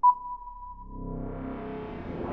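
Electronic ping: a sharp click and one pure high tone that fades out over about a second, then a synthesizer chord swelling in.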